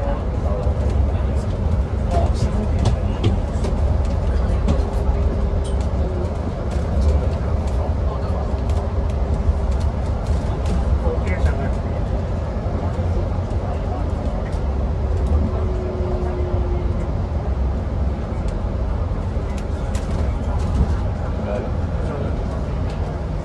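Cabin noise on the lower deck of an Alexander Dennis Enviro500EV battery-electric double-decker bus cruising through a road tunnel: a steady heavy low rumble from the road and tunnel, with no engine, a faint steady whine and scattered light rattles and clicks from the bodywork.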